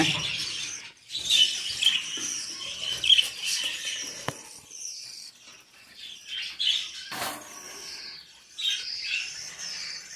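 Budgerigars chirping and chattering in many short, high calls, with a couple of brief sharp clicks, about four and seven seconds in.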